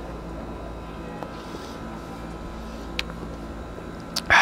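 Steady low background hum with no speech, and a single faint click about three seconds in as a pint glass is set down on a tiled tabletop.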